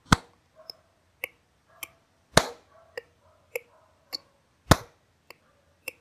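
Hand claps keeping a steady time-beat: a loud clap about every 2.3 seconds, each followed by three softer clicks at an even pulse, so that each beat is divided into four counts.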